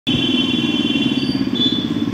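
A motor vehicle engine running close by, a steady low drone, with faint high tones over it in the first second and again about a second and a half in.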